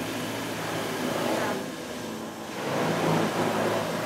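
Industrial food mixer with a stainless-steel bowl running steadily as it churns a thick bean-and-rice-cake mass, a continuous machine hum that grows a little louder toward the end.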